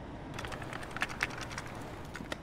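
A rapid, uneven run of faint clicks starting about a third of a second in, over a low steady hum.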